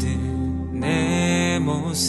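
A slow Korean worship song: a voice sings long held notes over soft accompaniment.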